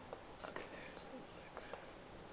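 A woman quietly saying "okay", almost in a whisper, over faint room tone, with a few faint clicks.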